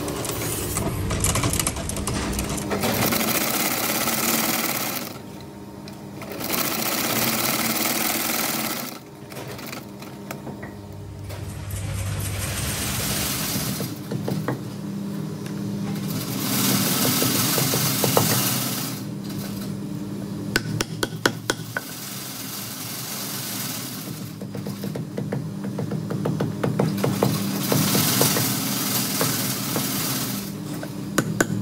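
Leather knife-sheath edge being sanded on a motor-driven abrasive wheel, the grinding noise coming and going as the leather is pressed to the wheel and lifted off, over a steady motor hum. Later come a run of light, sharp taps of a punch setting the sheath's metal fittings.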